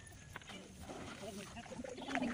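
Faint rustling of dry paddy grains as two children dig through basins of unhusked rice with their hands, searching for buried coins, with soft voices in the background.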